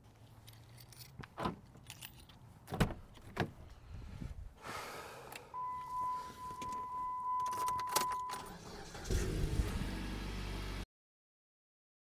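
Jeep Patriot being started: a few sharp clicks and knocks of door and keys, a steady high warning chime for about three seconds, then the four-cylinder engine starts and runs low before the sound cuts off abruptly.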